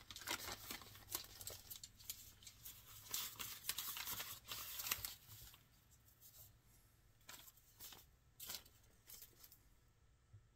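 Newspaper rustling and crinkling as it is unrolled from around a bundle of clay handles, a run of soft crackles that thins out to occasional ones after about five seconds.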